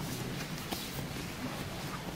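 Faint rustling of jiu-jitsu gi fabric and bodies shifting on foam mats during a grappling demonstration, with a few light taps and clicks over room noise.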